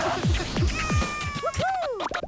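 Cartoon-style sound design for an animated TV channel ident, over music: a run of quick downward pitch drops in the first second, then swooping tones that rise and fall, like a meow, with sharp clicks throughout.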